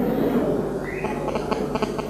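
A pause in the sermon's amplified sound: a steady low hum from the microphone and sound system, with a few faint taps about a second and a half in.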